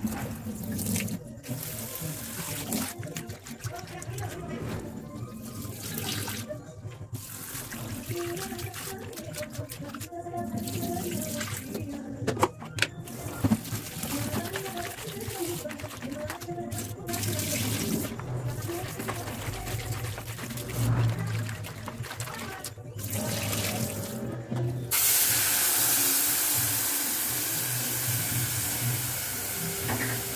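Tap water running and splashing into a colander and bowl of vegetables in a stainless steel sink as hands rinse them; the flow breaks off briefly several times. For the last few seconds the water sound is steadier and louder.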